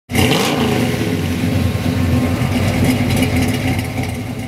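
A loud vehicle engine revving, cutting in suddenly and holding steady.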